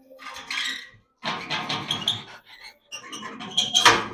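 A Rottweiler vocalising in three rough, noisy bursts of about a second each.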